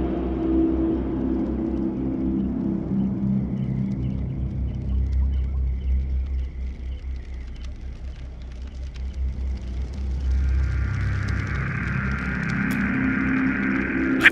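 Low, steady rumbling drone of an ambient film soundscape, with faint low music tones that fade in the first few seconds. Near the end a higher hiss fades in over the rumble.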